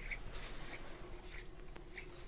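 Footsteps and shoe scuffs on a tiled floor as people walk, about one step every half second or so, over a faint steady hum.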